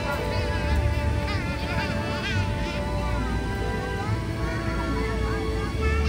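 Busy outdoor ambience of children's high voices calling and squealing, over faint held musical tones and a low steady hum.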